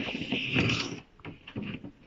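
A paper picture card sliding out of a wooden kamishibai stage frame. There is a brief hiss of card rubbing against wood in about the first second, then fainter rustling as the card is handled.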